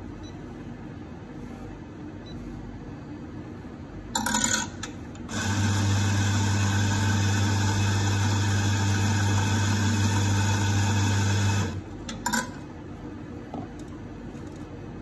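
Electric espresso grinder motor running steadily for about six seconds, with a strong low hum, as it grinds a dose of coffee into a portafilter. A short noisy burst comes about a second before it starts, and a brief knock comes just after it stops.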